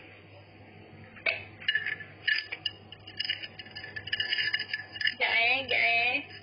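A run of light clinks and taps starting about a second in, over a steady low hum, with a short voice sound near the end.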